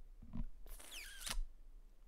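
Plastic model-kit sprue and hobby tool being handled on a cutting mat: a small click, then a short scrape with a falling squeak.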